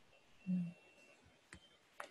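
Quiet pause in video-call audio: a brief low hum about half a second in, then two sharp clicks, over a faint steady high whine.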